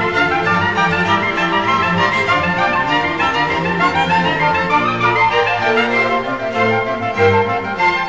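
Sacred classical music played by an orchestra with bowed strings, sustained notes running continuously.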